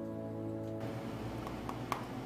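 Acoustic guitar chord ringing out and fading, cut off abruptly under a second in; after it a low steady room hum with a couple of faint clicks.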